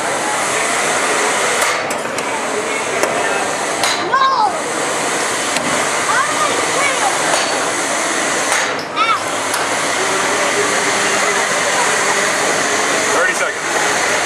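Beetleweight combat robots running in the arena: a steady whir from the spinning weapon and drive motors, with a few sharp knocks as the robots hit each other or the arena.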